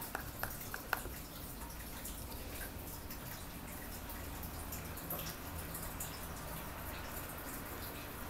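Mod Podge glue poured from a small plastic tub onto paper scraps, with a few faint clicks and drips in the first second over a steady low room hum.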